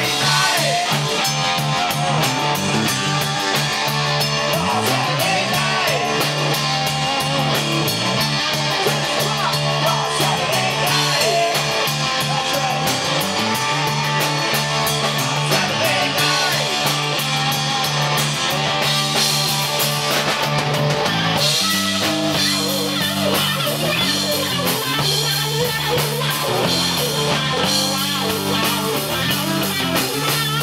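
A live rock band playing a song: electric guitar, electric bass and a Pearl drum kit, with a male lead vocal. The song moves into a new section about two-thirds of the way through.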